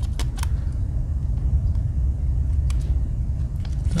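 A steady low rumble, with a few faint small clicks as a fingernail works the tweezers out of the slot in a Swiss Army knife's plastic scale, the last near the end as they come free.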